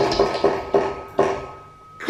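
Spinning prize wheel's pointer clicking over the pegs as the wheel slows. The clicks come further and further apart and stop a little over a second in.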